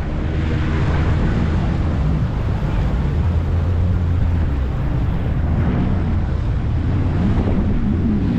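Jet ski engine running steadily at low cruising speed, a constant low hum, with wind buffeting the microphone and water rushing past.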